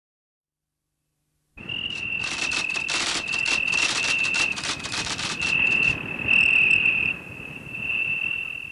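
Insects chirping: a high, steady trill laced with dense rapid pulses, starting after about a second and a half of silence.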